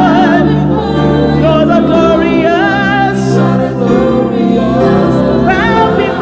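A woman singing a gospel worship song with wide vibrato over sustained keyboard chords, with other voices joining in.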